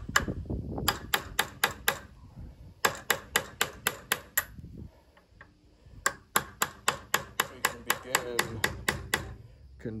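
Hammer striking a steel rod used as a drift, driving the old wooden handle out of an axe head's eye: three quick runs of sharp metallic strikes, about four a second, with a short pause about halfway through.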